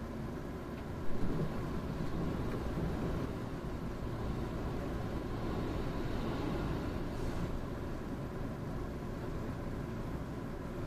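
Cabin noise of the Kintetsu Aoniyoshi limited express train running slowly: a steady low rumble of wheels on rails, with a single sharp knock about a second in.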